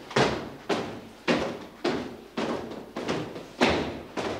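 Slow, heavy footsteps on a wooden staircase: a steady run of thuds, about two a second, each with a short echo.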